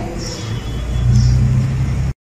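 A low rumble with no speech, and a steadier low hum joining about halfway through.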